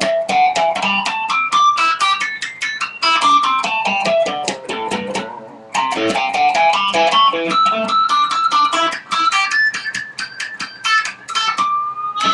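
Electric guitar at low gain walking a pentatonic scale up and down one note at a time, trying for a pinch harmonic squeal on each picked note. It plays two runs with a brief break about halfway through and ends on a held note.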